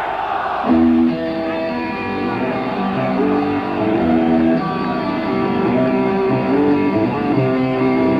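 Live rock band starting a song: a brief crowd noise, then about a second in an electric guitar begins a slow intro of sustained picked notes in a changing chord pattern.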